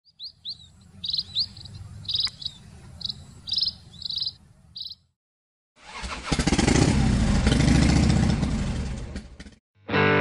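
Small birds chirping, about ten short high calls over a low steady rumble, for the first five seconds. After a brief silence, a motorcycle engine runs and revs, swelling and then fading for about four seconds, the loudest sound here, and it stops just before the guitar music comes in.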